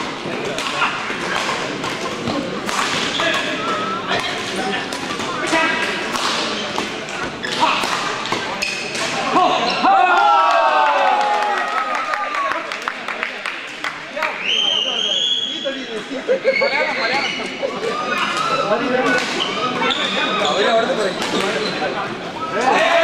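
Badminton rallies: rackets striking the shuttlecock again and again, with players' feet on the court, over crowd voices in a large hall. About ten seconds in the hitting stops and voices take over, and the strokes resume near the end.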